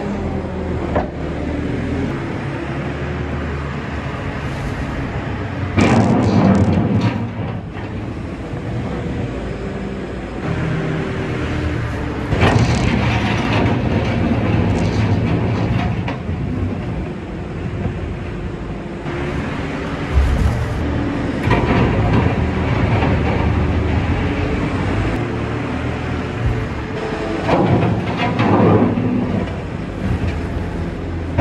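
Engine of a front-loading farm machine running steadily while its bucket scoops and lifts straw-bedded cattle dung. The engine and the scraping grow louder in several surges as the bucket works the muck.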